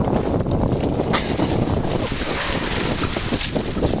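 Wind rumbling on the microphone over small waves washing in shallow water and the splashing of dogs wading, with a higher hiss of water swelling for a second or so in the second half.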